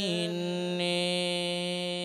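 A Buddhist monk's voice chanting kavi bana, Sinhala Buddhist verse preaching, through a microphone. The voice steps down slightly at the start and then holds one long, steady note.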